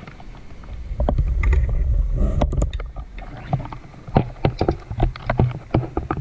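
Underwater sound of a scuba diver's exhaled breath: a burst of bubbles rumbles past the camera for a couple of seconds, followed by scattered clicks and crackles.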